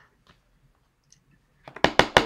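A quiet stretch with a few faint ticks, then a quick cluster of sharp computer-mouse clicks near the end as the presentation slide is advanced.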